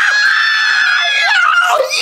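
A person's long, high-pitched scream, held almost level for most of two seconds before breaking off near the end.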